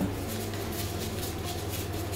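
A steady low hum in an otherwise quiet room, with no distinct sounds.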